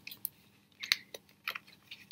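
Paper and card being handled: a few short crinkles and clicks as a card stand is pushed onto a cut-out paper doll, the loudest about a second in.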